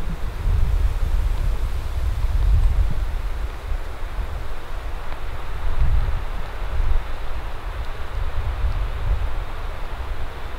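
Wind buffeting the microphone: a low, gusting rumble that rises and falls over a steady rustling hiss.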